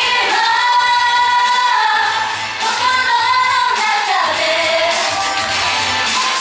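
Female pop vocal group singing live into microphones over a pop backing track with a steady kick-drum beat. Long held notes, with a downward slide in pitch about four seconds in.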